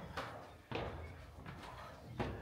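Footsteps on old wooden stairs: two quiet thuds within the first second, then faint background.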